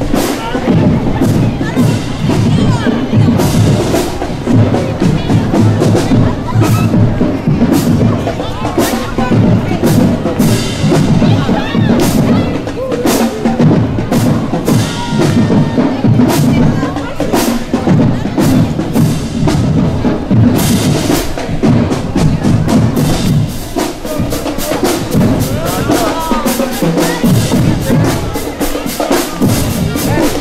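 Marching band drumline playing a street cadence on snare and bass drums, in a steady marching rhythm, with crowd voices along the route.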